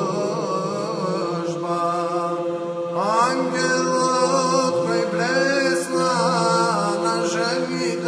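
Orthodox church chant: a male voice sings a slow, ornamented melismatic line over a steady held drone note.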